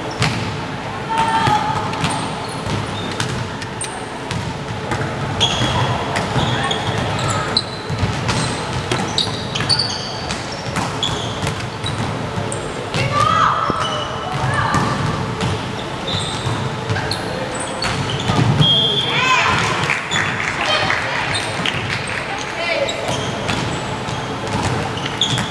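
Indoor volleyball rally: sharp hits of the ball, sneakers squeaking on the wooden court, and players and spectators shouting, echoing in a large sports hall. The shouting is loudest about twenty seconds in.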